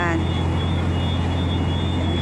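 Steady low rumble of city street background noise with a faint, thin high tone above it, unchanging throughout.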